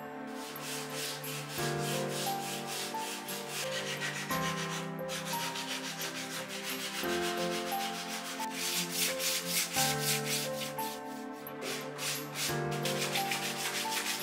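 A sanding block rubbed quickly back and forth along the curved edge of a laminated plywood bow mould, several strokes a second. The strokes pause briefly about five seconds in and then resume, denser towards the end. Soft instrumental music plays underneath.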